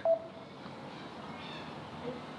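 Quiet room tone with a faint steady hiss: touchscreen keypad digits are being tapped on a phone with its keypad dial tones switched off, so the presses make no tones.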